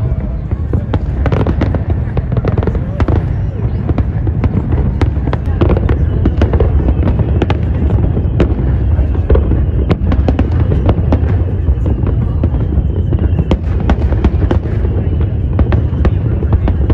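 A fireworks display: aerial shells bursting one after another, with many sharp bangs and crackles over a continuous low rumble.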